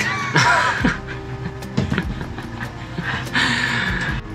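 A man laughing in two breathy bursts, one just after the start and one near the end, over background music.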